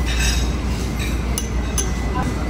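A few light clinks of a metal spoon against small porcelain dishes and plates, short sharp ticks with a brief ring.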